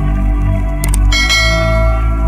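Background music with a subscribe-button sound effect laid over it: a short mouse click, then a bright bell chime about a second in that rings on.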